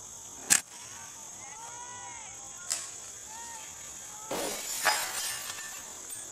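A golf club strikes a ball once, a sharp crack about half a second in, followed later by a smaller click. Near the end comes a longer, rough noise.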